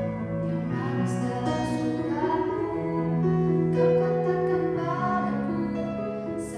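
A woman singing a slow pop ballad to electronic keyboard accompaniment: long held keyboard chords change every second or two beneath her sustained, sliding vocal line.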